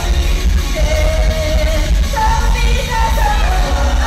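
Idol pop group of women singing live on stage over a loud backing track with a strong bass, in a large concert hall.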